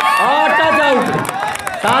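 Speech: a man commentating in a loud, raised voice, with crowd noise behind.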